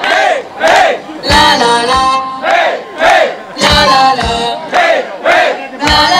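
Many voices singing along in unison with a live band, in short loud phrases that rise and fall, over a regular low thump.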